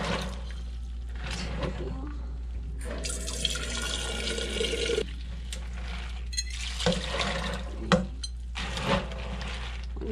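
Tap water running into a pot at a kitchen sink, filling it with water for the peanuts. The fill is most intense in the middle, and a few sharp knocks come in the second half.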